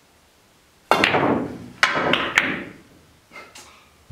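A pool cue strikes the cue ball about a second in. Over the next second and a half come several sharp clicks of billiard balls hitting one another, then a fainter knock near the end.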